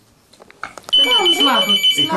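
A telephone ringing once: a steady, high ring lasting about a second, starting about halfway through, with people talking over it.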